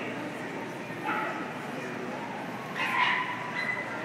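Dogs yipping and whining over the steady chatter of a crowded, echoing exhibition hall, with short high-pitched calls about a second in and again near three seconds.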